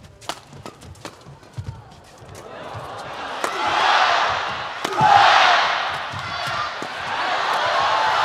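Badminton rally: sharp cracks of rackets hitting the shuttlecock, light at first and then two loud strokes about three and a half and five seconds in, while the arena crowd's cheering swells and falls between them.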